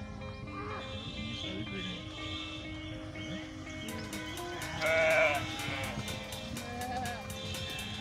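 Background music of held notes, with a steady ticking beat coming in about halfway. Over it, an animal from a flock of sheep and goats gives one loud bleat about five seconds in, and fainter bleats follow later.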